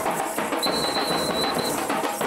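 Fast, loud drumming with dense clattering percussion, the accompaniment of a lezim folk dance. A high steady tone sounds for about a second in the middle.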